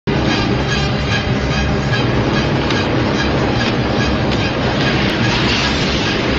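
Loud, steady rumble of a heavy truck's engine and road noise, with a car running alongside it, in a film's chase sound mix.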